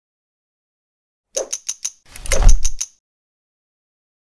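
Edited-in sound effects for an animated logo reveal: a quick run of four sharp mechanical clicks, then a louder, deeper clunking burst about two seconds in that lasts under a second.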